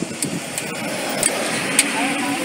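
Engine and road noise from a passing open-top double-decker tour bus, swelling slightly as it goes by close alongside, with a few short sharp clicks.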